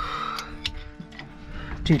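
Light metallic clicks and knocks from a hydraulic bottle jack and its steel pump handle being fitted under the van, over background music with steady held notes.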